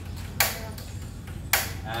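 Two sharp clicks about a second apart from the control knob of a portable single-burner LPG gas stove being turned.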